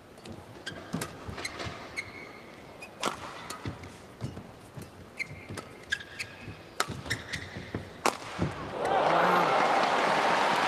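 Badminton rally: a shuttlecock struck back and forth by rackets, sharp hits about every half second to a second, with short squeaks of shoes on the court. Near the end the rally stops and the arena crowd cheers and applauds the won point.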